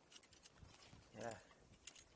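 Near silence, with a few faint light clicks early on and again near the end. A voice briefly says "yeah, what" about a second in.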